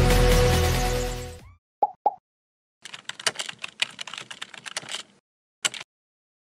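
Background music dying away, then two quick pop sound effects and a run of computer-keyboard typing sound effects, ending with a single click near the end: the sound track of a web address being typed into an on-screen search bar.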